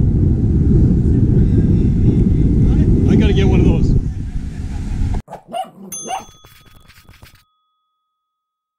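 Heavy wind buffeting the camera microphone, with faint voices, until an abrupt cut about five seconds in. Then a short sound effect of small-dog barks and a bell-like ding.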